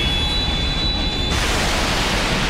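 A loud, steady rushing noise, the sound effect of an animated fight scene's blast. A thin, high whine sits over it and stops about a second and a half in.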